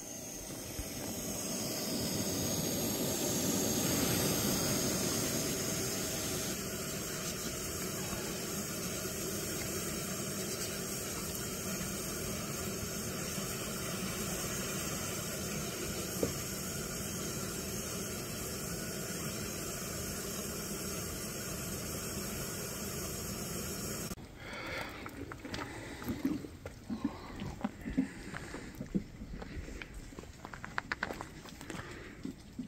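A steady rushing noise, like a running motor or wind, that cuts off abruptly about six seconds before the end. Quieter scattered clicks and knocks follow.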